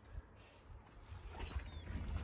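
Footsteps and movement as a person walks out through a trailer doorway onto dirt, growing louder after about a second. A few brief high squeaks come near the end.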